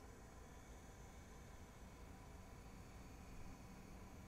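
Near silence, with only a faint steady mechanical hum from the DiscoVision PR-7820 videodisc player as its spindle carriage slides the spinning disc sideways.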